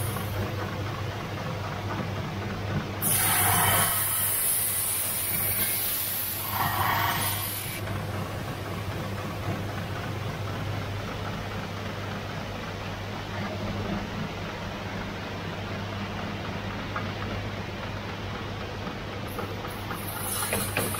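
Electric lens-grinding machines running with a steady hum as their wheels spin. Between about 3 and 8 seconds in, a louder harsh hissing scrape, like glass being ground against a wheel.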